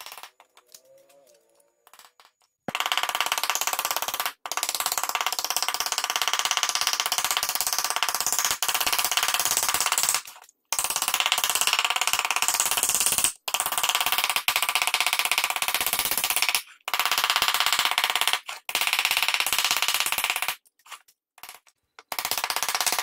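Very rapid hammer blows on a sheet-tin cutout lying in a carved beech-wood mould, sinking it into a rounded fruit shape. The blows start about three seconds in and come in fast runs of a few seconds each, with short pauses between them.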